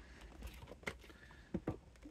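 A few faint clicks and taps, about four in two seconds, as a VHS cassette in a cardboard box is handled and stood on a shelf, over a low steady hum.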